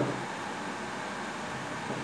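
Steady background hiss with no distinct sounds.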